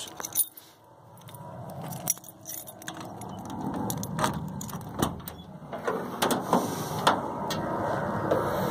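A bunch of keys jangling in hand, with scattered light clicks and rattles that get busier after the first few seconds.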